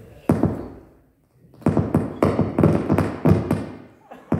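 Taps and knocks of a live microphone being handled, heard through the sound system: one sharp knock about a quarter second in, a short pause, then a quick run of knocks over the last two seconds.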